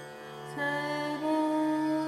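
Indian classical vocal and Turkish electric saz duet in a slow, meditative raag over a steady low drone. A woman's voice and the saz hold long notes, with a slide into a new note about half a second in.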